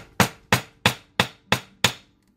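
A hammer striking anodized aluminum wire on a small steel anvil, six even blows about three a second, flattening and spreading the wire's end; each blow leaves a faint ring from the anvil.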